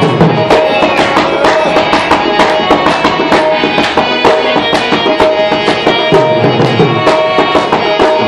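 Live Pashto folk music: a dholak barrel drum beating a quick, steady rhythm over sustained harmonium chords.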